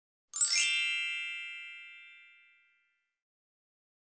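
A single bright chime, struck once about half a second in and ringing out, fading away over about two seconds.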